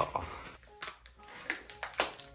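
A few sharp light clicks and taps of a plastic instant-rice bowl and plate being handled, over faint background music.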